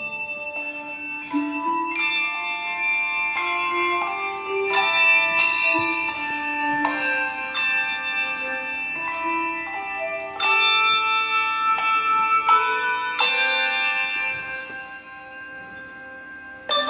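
A handbell quartet playing a melody on brass handbells: notes struck in overlapping chords that ring on and fade, new notes coming every second or so. Near the end the ringing dies down and is left to fade.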